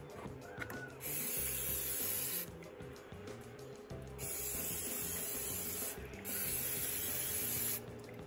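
Aerosol can of waterproofing spray hissing in three long bursts, each lasting one and a half to two seconds, as it is sprayed onto boots.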